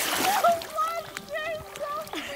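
Water splashing against the dock, loudest about half a second in, followed by a dog whining in short, high, wavering cries.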